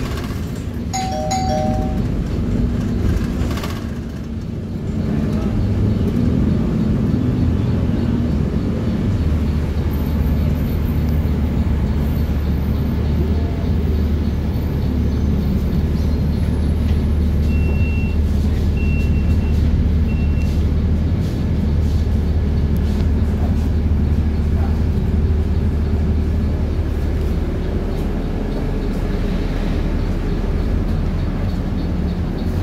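Transjakarta bus cabin: the bus's engine and road noise as it slows into a stop, with a two-note chime about a second in. Then a steady low engine hum while the bus stands at the stop, and three short high beeps about two-thirds of the way through.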